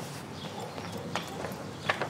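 Footsteps on paving stones: a few sharp, separate steps in the second half, over a faint outdoor background.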